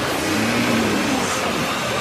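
Dense electronic sound-effect rush, steady and loud, with a low hum about half a second in and a high whooshing swell near the end, layered over background music.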